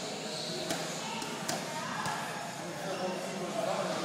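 A few gloved punches smacking on focus mitts, sharp separate hits over the echoing hum and voices of a gym hall.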